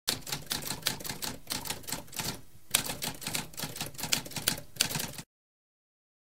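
Typewriter keys typing rapidly, a quick run of sharp clacks with a short break about halfway through and a harder strike just after; the typing stops about five seconds in.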